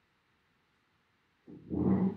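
Near silence, then about one and a half seconds in a short, pitched vocal sound that lasts under a second.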